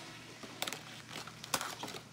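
Cardboard trading-card booster box being handled as its lid is worked off: light rustles with a few short clicks and taps.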